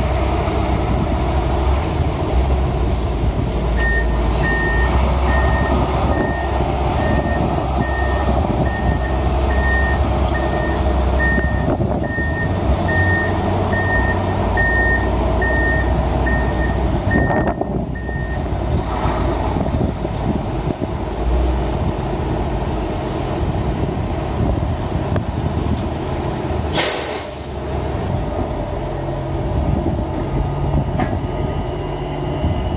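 Heavy diesel truck engine running close by, with a reversing alarm beeping steadily at one pitch for about thirteen seconds as the truck backs up. Near the end a short, sharp hiss of air, like an air brake release.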